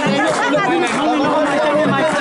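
Close crowd chatter: several people talking over one another at once, with no pause.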